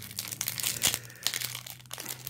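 Plastic shrink-wrap on a deck of game cards crinkling and crackling in an irregular patter as fingers pick at it to get it open.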